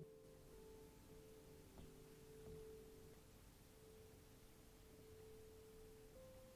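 Very soft piano notes held on the pedal, a few sustained tones dying away slowly, with a couple of faint new notes struck about two seconds in.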